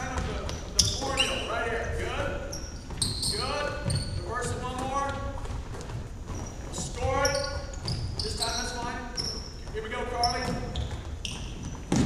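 Basketball bouncing and being passed on a hardwood gym floor, with short high sneaker squeaks as players cut, and indistinct voices echoing in the gym.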